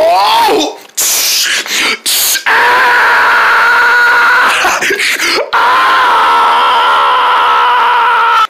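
A person's voice in a wobbling, sliding cry, then two long high screams held steady for two to three seconds each, with short noisy bursts between.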